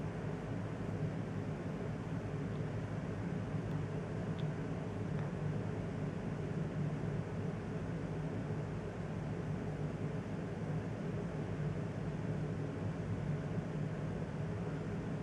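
Steady low hum with a faint hiss, an unchanging background drone with no distinct sounds in it.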